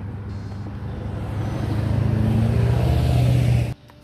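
A motor vehicle going by on the road, its low engine drone growing steadily louder and then cut off abruptly near the end.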